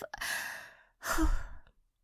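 A woman's breathy sigh, followed about a second later by a second, shorter breath.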